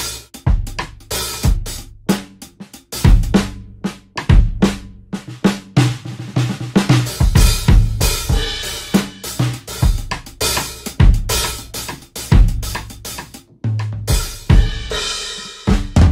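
Spitfire Audio LABS Drum Kit, a sampled acoustic drum kit, played as an irregular run of hits: kick, snare, hi-hat and cymbals.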